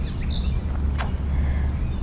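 Outdoor ambience dominated by a steady low rumble, with one short high bird chirp about a third of a second in.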